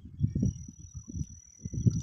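A steady high-pitched insect whine, with irregular low rumbling gusts of wind buffeting the microphone.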